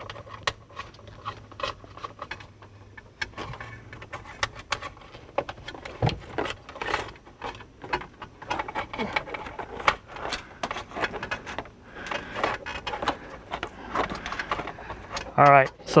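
A coat hanger and wire being fished up through a Jeep Wrangler JK's dashboard trim: scattered small clicks, taps and scrapes of metal against plastic and metal, irregular and without any steady rhythm.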